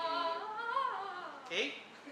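A woman's voice humming one short note, about a second long, that rises and then falls in pitch, followed by a quick spoken "okay."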